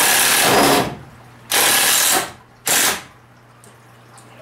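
Cordless drill running against a wooden window frame in three bursts: a first of about a second, then a second burst and a short third one, with the motor stopping between them.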